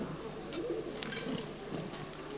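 Faint, low murmuring of voices under studio room noise, with a single soft click about a second in.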